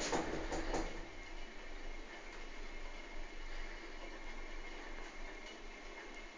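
Quiet, steady background noise, an even hiss with a faint steady high tone and a low hum beneath it.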